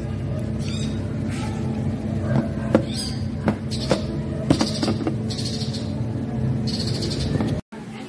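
Sharp clicks and taps of small metal swivel-cover USB flash drives being handled, over a steady background hum, with a few faint high-pitched sounds in the middle; the sound drops out briefly near the end.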